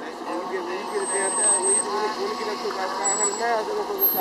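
Muffled, indistinct talking in the background over a steady vehicle hum, with a brief thin high whine about a second in.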